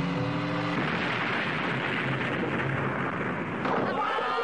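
Cartoon sound effect of a hand-cranked box wired with cables: a short rising whine as it is cranked, then a loud, steady, noisy roar for about three seconds that stops shortly before the end.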